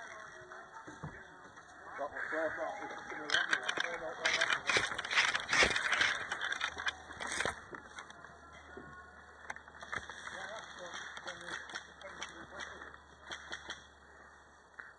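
Close movement noise of a player on the move: clothing and kit rustling and footsteps on the forest floor, loudest for about four seconds in the middle, with voices in the background.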